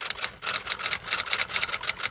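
A fast, irregular run of sharp mechanical clicks like typewriter keys being struck, about nine a second, ending near the end.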